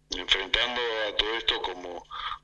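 Speech only: a voice talking over a telephone line, with the narrow, thin sound of a phone call.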